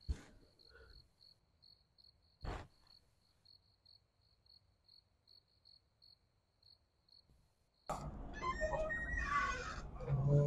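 Cricket chirping faintly in a quiet night-time room, a high, even chirp about three times a second, with a soft thump about two and a half seconds in. The chirping stops near the end, where a louder, busy sound cuts in.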